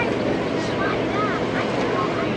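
Open-air tour tram running as it rolls along, a steady drone, with indistinct passenger voices mixed in.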